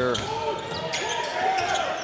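A basketball dribbling on a hardwood court, with scattered knocks over faint crowd voices in an arena.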